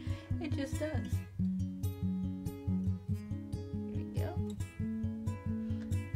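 Background music led by a plucked acoustic guitar, playing with a steady beat.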